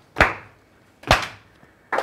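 Hand claps keeping a steady beat, about one a second: quarter notes in four-four time, one clap per beat.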